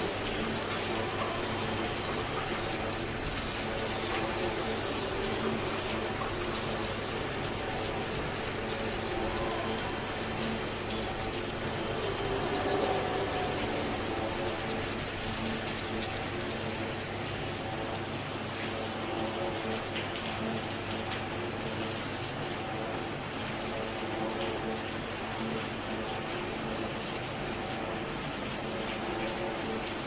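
Aquarium water circulation running steadily: a continuous rush of flowing, falling water from the tank's filter return, with a faint murmur of voices or music underneath.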